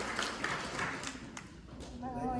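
Scattered applause from a seated audience, thinning out and fading away about a second and a half in.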